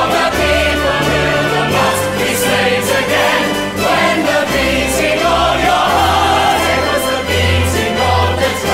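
Musical theatre ensemble chorus singing with a full orchestra, sustained low bass notes underneath.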